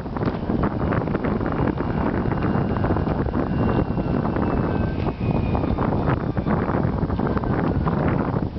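Wind buffeting the microphone throughout, loud and gusty. Beneath it a faint thin whine comes and goes around the middle, falling slightly in pitch.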